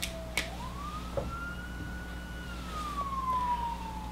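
Faint emergency-vehicle siren wailing: its pitch rises sharply about half a second in, holds for a couple of seconds, then slides slowly down.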